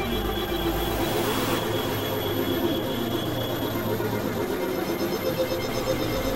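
Experimental electronic drone music from synthesizers: dense layered sustained tones over a low hum and noise, with a short hiss swell about a second in and a high tone that drops out a little past halfway.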